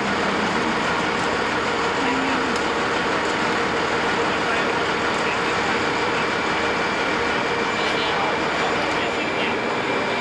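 A steady, loud engine drone of machinery running on an airport ramp, even throughout with a couple of faint steady tones in it; faint talk sits beneath it.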